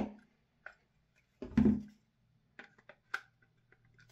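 Handling noise from an airsoft MP5K gas blowback's lower receiver being slid into position on the upper receiver: a few light clicks, with one louder knock about a second and a half in.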